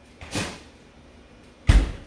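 A short rustle-like noise, then near the end a single loud, deep thump, as of something knocked or set down.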